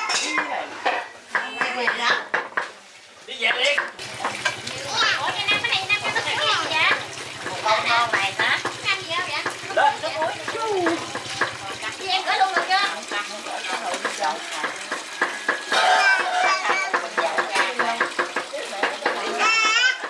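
A knife chopping on a cutting board for the first few seconds, then several people talking as they work. A low steady hum sits under the voices for about eight seconds in the middle.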